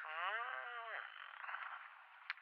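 A man's brief wordless vocal sound, about a second long, its pitch dipping and then rising, followed by faint breath-like noise.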